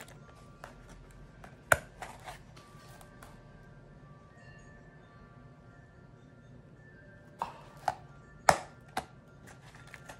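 Metal frame clasp of a vintage clutch purse clicking open about two seconds in and snapping shut again near the end, with lighter taps and clicks of the metal frame being handled in between.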